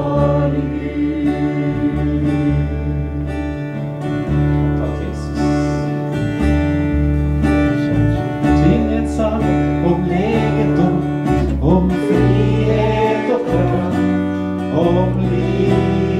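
Live worship band playing: electric bass guitar holding low notes under a strummed guitar, with voices singing a Norwegian worship song.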